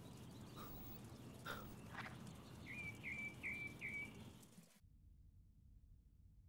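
Faint outdoor ambience with a bird giving four short chirps in quick succession about three seconds in. The sound drops to near silence shortly before the end.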